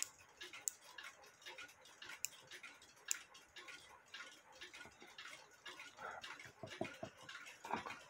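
Faint, irregular light clicks and ticks of a small brass cuckoo-clock ratchet wheel and its click being handled and worked between the fingers.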